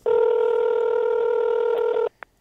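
Telephone ringback tone on the caller's line: one steady ring tone lasting about two seconds that cuts off sharply, the sign that the called phone is ringing and has not yet been answered.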